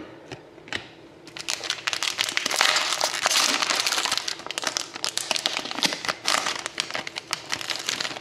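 Wrapper of an Upper Deck Artifacts hockey card pack being torn open and crinkled as the cards are pulled out. The crinkling starts about a second in and is loudest in the middle.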